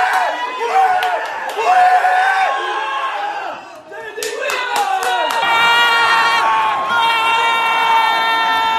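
A small group of men shouting and cheering in a room, celebrating a goal, with a few sharp slaps or claps about four to five seconds in. In the last few seconds the yelling gives way to a steady, held tone.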